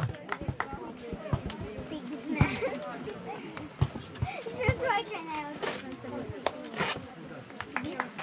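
Faint background talk of adults and children, several voices at once, with scattered light clicks and knocks.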